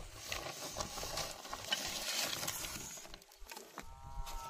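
Woven plastic sack rustling, with light clicks of bamboo sticks knocking together as they are handled and pulled out of it.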